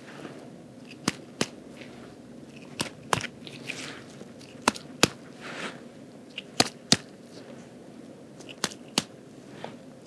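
Light abdominal percussion with gloved fingers: sharp taps, mostly in pairs, about every two seconds, picked up close by a clip-on microphone, with soft rustling of the gown between.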